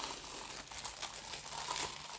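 Packaging crinkling and rustling as parts of a wax warmer are unwrapped by hand, a steady run of fine crackles.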